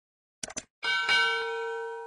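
Subscribe-animation sound effects: a quick burst of three mouse clicks about half a second in, then a bright bell chime that rings out near one second and slowly fades. The chime goes with the notification bell icon being clicked.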